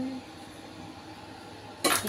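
Steady low hiss of a lit gas hob burner under a wok, with one short sharp clink near the end.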